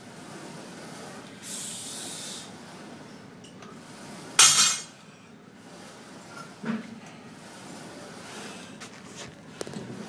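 Plate-loaded leg press machine in use: a loud metallic clank with a short ring about four and a half seconds in. Around it are a brief hiss earlier and a duller knock and small clicks later.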